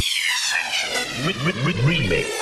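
Electronic dance music breakdown in a house remix: the kick drum and bass drop out, and a falling sweep effect plays over sliding synth notes.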